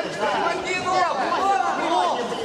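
Many overlapping voices of spectators chattering and calling out in a large sports hall.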